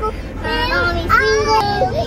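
A young child singing in a high voice, with a steady low road rumble beneath, inside a moving car.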